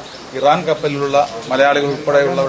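Speech only: a man talking in Malayalam.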